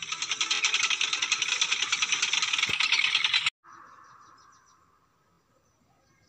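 A loud, rapid mechanical rattle, like a fast ratchet or whirring machine, that cuts off suddenly about three and a half seconds in. A fainter hum follows and fades away.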